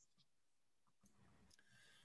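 Near silence on a video-call line, with a few faint clicks.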